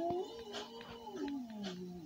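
A cartoon voice from a TV speaker holding one long, wavering hum-like note that slides lower in pitch near the end.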